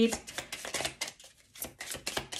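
A deck of Lenormand cards being shuffled by hand: a quick, irregular run of soft card flicks and slaps, with a short pause a little after halfway.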